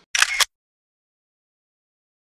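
Camera shutter click sound effect, a quick double click about a quarter second in, then complete silence.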